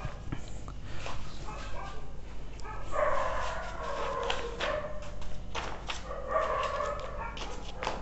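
An animal calling in a series of high-pitched cries, loudest from about three seconds in and again around six seconds in, with a few light clicks between.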